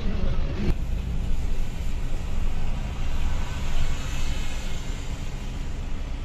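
Steady engine rumble and road noise of a Volvo 9600 multi-axle sleeper coach heard from inside the cabin while it drives along.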